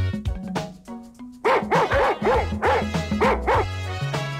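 Background music, with a dog yapping in a quick run of about eight short barks from about a second and a half in.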